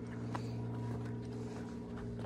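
A steady low hum, engine-like, with a few faint footsteps on a dry dirt trail.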